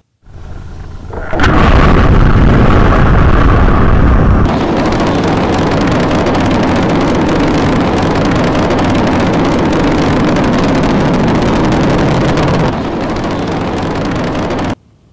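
Rocket launch roar: a rumble builds for about a second, then a loud, steady rushing roar that eases slightly after about four seconds and steps down again near the end.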